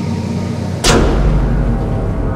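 Backing music, then a little under a second in a sudden whoosh-and-boom impact sound effect that sweeps down from high to low. A deep bass rumble follows.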